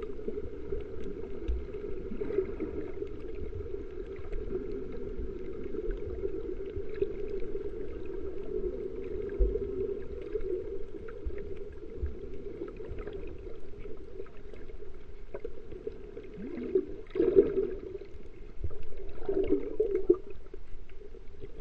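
Muffled underwater sound picked up by a camera held below the surface while snorkelling: a steady low rumble of moving water, with two louder surges near the end.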